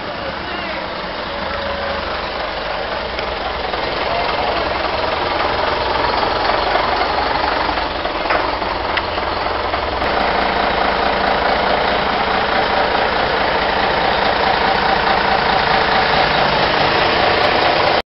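Diesel engine of an AEC Routemaster double-decker bus running as the bus approaches and pulls up close, growing steadily louder; from about ten seconds in it runs at a steady, close tick-over.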